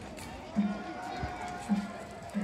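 Danjiri festival street sound: voices of the crowd and festival men, a held call or flute note, and drum beats from the danjiri's festival music about once a second.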